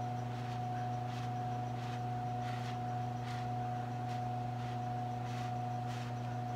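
Repeated short puffs of breath blown through a drinking straw onto wet acrylic paint, about one every three-quarters of a second, over a steady low electrical hum.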